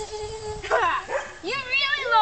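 A child's wordless high-pitched vocal sounds: a held note, then squealing, wavering whines in the second half, as in rough play.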